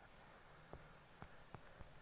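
Near silence: a faint cricket trilling steadily in a high, evenly pulsing tone, with a few faint ticks.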